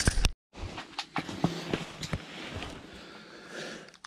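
Handling noise from ice-fishing gear as the jig is let back down: a cluster of sharp clicks at the start, then scattered irregular knocks and rustling over a steady hiss.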